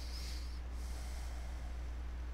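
Two soft breaths through the nose near the microphone, one at the start and one about a second in, over a steady low electrical hum.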